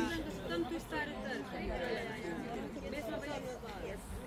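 Indistinct chatter of several people talking at once, with overlapping voices and no single clear speaker.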